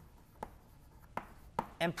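Writing on a board: a few short, sharp taps and strokes, about half a second, a little over a second and about a second and a half in.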